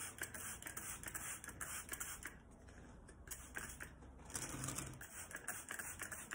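Plastic trigger spray bottle being pumped over and over, each squeeze a click with a short hiss of mist, about two a second, with a lull in the middle.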